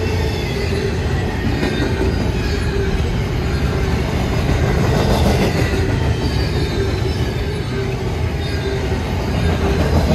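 Double-stack intermodal container cars of a freight train rolling steadily past: a loud, continuous rumble of steel wheels on rail with a high-pitched wheel squeal over it.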